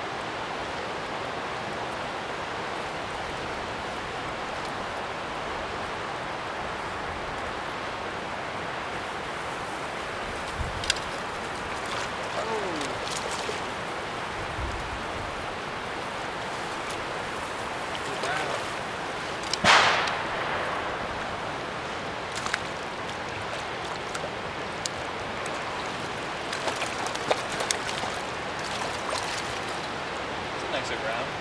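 Steady rush of river water running over a riffle. A few faint clicks come through it, and there is one short, loud burst about twenty seconds in.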